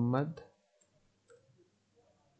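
A spoken word ends in the first half-second, followed by a few faint clicks of computer keyboard keys as an email address is typed.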